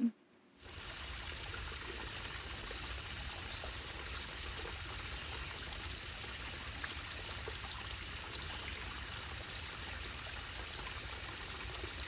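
A small, shallow woodland creek trickling steadily over a muddy, leaf-strewn bed, starting about half a second in.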